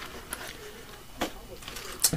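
Quiet handling of small paper baskets on a tray, with a faint click early on and one brief tap about a second in.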